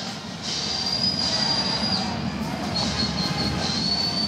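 Stadium crowd noise with a long, high, whistle-like tone heard twice over it: first from about half a second to two seconds in, then again from near three seconds to the end.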